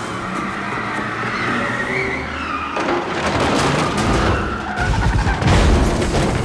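A car skidding with its tires squealing in wavering, drawn-out screeches over a low rumble, followed by several heavy crashes near the end as it ploughs into rows of chairs.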